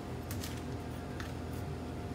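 Faint scrapes of a metal spoon scooping seeds out of a halved raw butternut squash, a couple of short strokes, over a steady low hum.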